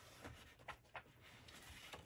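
Near silence, with a few faint taps and rustles of a large paper sheet being held up and pressed against a whiteboard.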